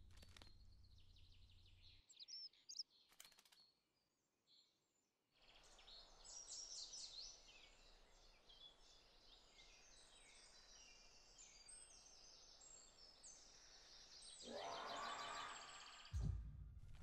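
Faint forest ambience of many small birds chirping and twittering, with a few louder chirps about three seconds in. A soft rushing noise swells near the end.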